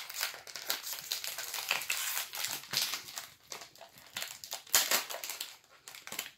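Crinkly plastic snack-bar wrapper being torn and peeled open by hand, a dense run of irregular crackles with a sharper one about five seconds in.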